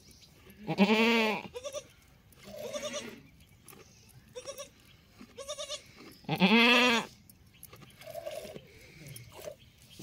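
Goat bleating: two loud, quavering bleats, each under a second long, about a second in and again about six seconds in, with shorter, fainter calls between them.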